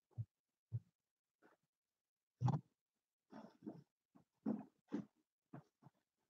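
Faint string of short, irregular snuffles and grunts from a pet dog, the loudest about halfway through.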